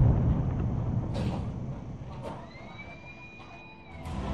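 Rumble of an airstrike explosion on a city, heard from a distance, fading away over about two and a half seconds. Two sharp cracks come about one and two seconds in, and a thin high tone glides upward near the middle.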